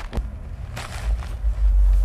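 A low, steady outdoor rumble that swells about a second and a half in, with a light click just after the start and a short rustle about a second in.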